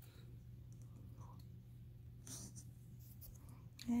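Quiet room tone: a steady low hum, with a couple of faint brushing sounds about two and three seconds in. A spoken word begins right at the end.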